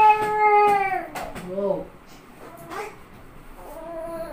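Baby crying: one long wail that falls away about a second in, a few short whimpers, then another cry starting near the end.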